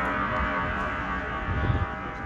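A gong ringing out and slowly fading, with a short low thud near the end.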